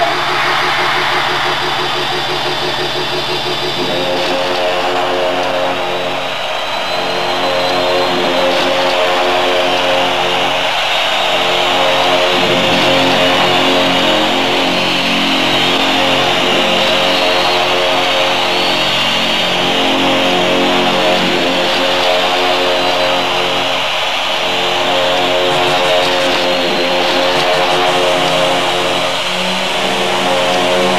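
Electronic synthesizer drone: sustained chord tones without a beat, shifting in pitch in steps, with a further layer coming in about four seconds in, over the noise of a large concert crowd.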